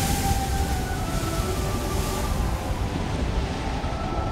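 Film soundtrack of a liner's bow at speed: a steady rush of wind and sea, with faint music underneath.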